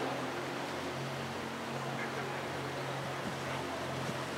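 Outdoor background ambience: a steady low hum under a faint, even hiss, with no distinct events.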